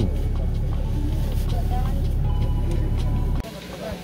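Steady low rumble inside a stopped car's cabin with the engine idling, and faint voices in the background; it cuts off suddenly a little before the end.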